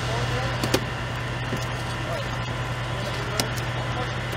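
Outdoor scene ambience: a steady low hum under faint voices of people in the background, with two sharp clicks.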